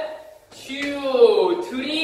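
Speech: a man's voice calling out in long, drawn-out syllables with falling pitch.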